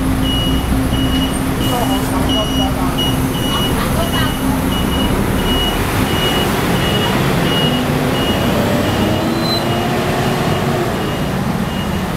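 Busy street traffic with a city bus's engine, and a high electronic beep repeating a little under twice a second throughout. In the second half an engine's pitch climbs steadily as a bus pulls away.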